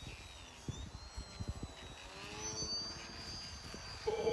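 Faint, thin whine of a small electric RC plane's motor and propeller in flight, its pitch rising about halfway through, with a few soft knocks.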